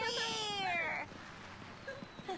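A person wailing: a long, wavering cry that falls in pitch and breaks off about a second in, leaving quieter background noise.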